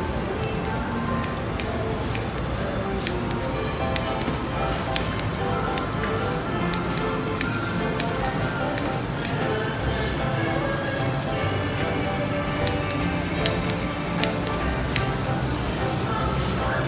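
Barber's scissors snipping hair: sharp, irregularly spaced clicks, about twenty in all, over steady background music.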